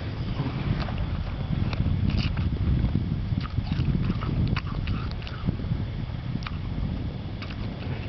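Wind buffeting the camera microphone: an uneven low rumble, with scattered light clicks and knocks over it.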